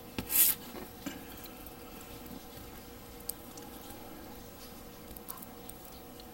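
Fingers handling and pressing together small plastic model-kit parts: a short rubbing scrape about half a second in, then a few faint plastic clicks, over a faint steady hum.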